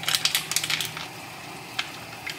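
A foil sauce sachet crinkling and tearing open in quick crackles through the first second. Behind it, a pan of miso-butter liquid is heating on high with a steady faint sizzle.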